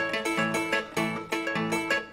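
Andean harp playing a fast instrumental run of plucked notes over a bass line that falls about twice a second, in a lively dance rhythm.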